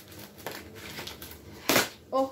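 Brown paper packaging being torn open and rustled by hand, with one louder rip near the end.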